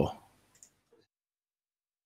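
The end of a man's spoken word, then two faint computer mouse clicks about half a second apart, followed by near silence.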